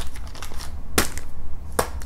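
Two sharp clicks, about a second in and again near the end, over a steady low hum.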